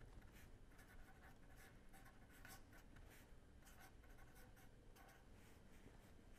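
Faint scratching of a pen on paper as a line of words is handwritten, in many short, irregular strokes.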